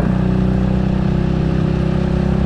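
Motorcycle engine running steadily under light throttle while cruising, with wind rushing over the rider's microphone.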